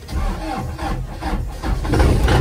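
Cummins turbo-diesel engine in a Jeep Wrangler TJ being cranked by the starter with a rhythmic low chug, catching and firing near the end. This is a hard start: the diesel would not crank right up on the first attempts.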